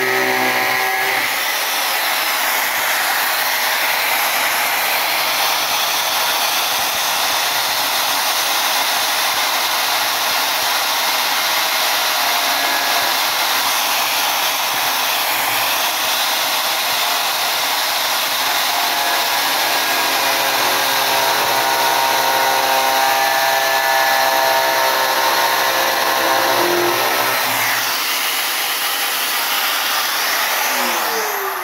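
Angle grinder running without a break, its disc cutting through the cast resin of a bust along a marked line. The whine shifts in pitch now and then.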